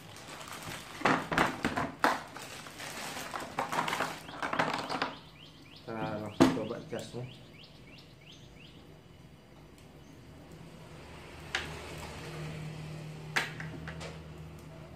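Plastic wrapping crinkling and rustling as it is handled, for about the first five seconds. A quick run of short high chirps follows around the middle, then quieter handling with two sharp clicks and a low steady hum starting near the end.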